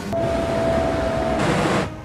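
Loud rushing of flame bursts from a fire-breathing snowman, with a steady whistle-like tone over the first second or so and a louder surge of rushing near the end.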